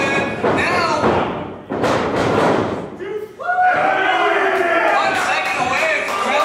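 Shouting voices, with a heavy thud of bodies hitting the wrestling ring mat about two seconds in, then more shouting.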